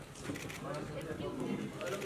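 Several people talking at once in a crowded room, with a few short clicks.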